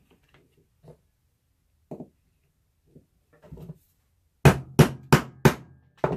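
A few soft handling sounds, then four quick hammer strikes on a metal snap-setting tool, about a third of a second apart, setting a snap into a leather sheath.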